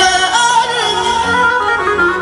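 A male singer sings an ornamented, wavering melodic line into a microphone over loud mahraganat party music.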